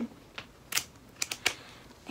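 A handful of short, crisp rustles and taps from a paper pattern booklet being handled.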